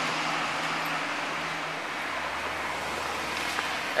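A bus's engine hum fading as it drives away, over a steady wash of street traffic noise; the hum dies out about two seconds in.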